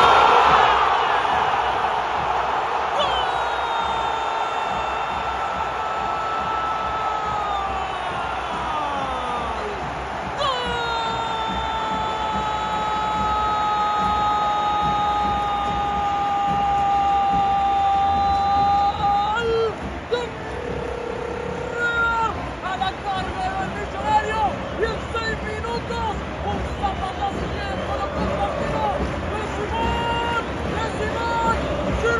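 Stadium crowd roaring at a goal, with a football commentator's drawn-out "gol" shout held twice for several seconds each, high-pitched and sliding down at the end, followed by excited shouting over the crowd.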